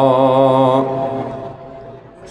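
A man's voice chanting Arabic, holding the last long note of 'kathiran' ('abundantly') in the melodic recitation that opens a sermon. The note wavers slightly and fades away in the second half.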